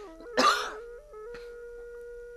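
A man clears his throat once, sharply, about half a second in, over a steady sustained background-music note.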